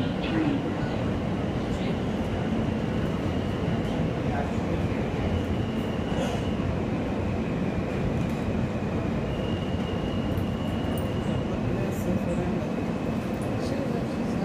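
Interior of an R160A New York subway car running at speed between stations: a steady rumble of wheels on track and car noise, with a faint high whine that comes and goes.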